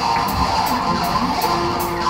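Live worship band playing: electric guitar over bass and drums, with a steady beat of crisp high hits a little over two a second.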